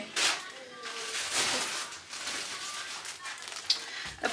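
A young child's voice faintly in the background, with rustling and handling noise.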